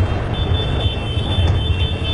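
Loud outdoor background noise: a steady low rumble with hiss, joined shortly after the start by a thin steady high tone.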